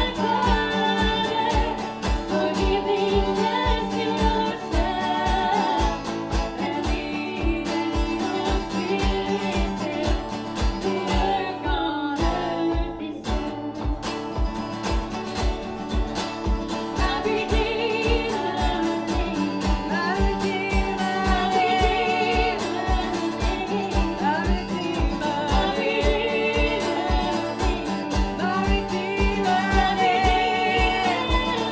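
A woman singing a Christian worship song, accompanied by her own strummed acoustic guitar, over a steady low beat.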